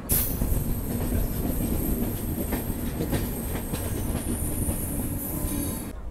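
Saraighat Express passenger train running along the track, heard loud through an open coach door: a steady rumble of wheels on rails with irregular clacks over rail joints.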